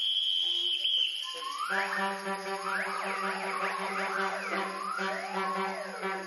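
Wind ensemble playing. A high held note fades out about a second in. Then many overlapping rising and falling pitch slides sound over a steady low held note.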